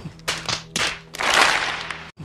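An edited-in comic sound clip: three short, sharp rushes of noise, then a longer, louder one, over a faint steady low hum, cut off abruptly.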